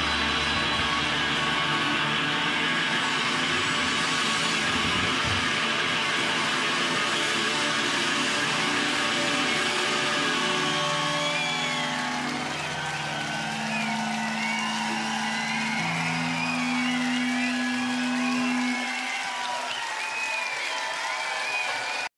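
Live indie rock band ending a song: guitars ring out on a long held final chord, with the drums and bass dropping away about five seconds in. Over the fading chord, from about halfway, the festival crowd cheers and whistles, and the held tones stop a few seconds before the end.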